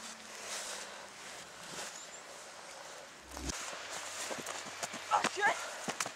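Soft crunching and brushing of a gloved hand in snow, then a dull thump a little past the middle. Near the end come footsteps in snow and short vocal sounds.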